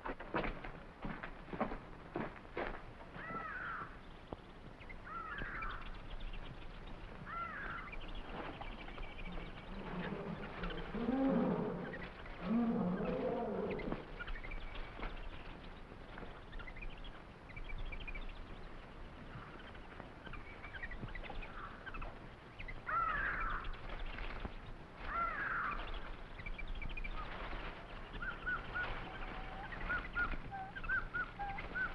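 Jungle animal sound effects: short bird-like calls every couple of seconds, with two deeper animal cries about a third of the way in. A few sharp clicks or rustles come at the start.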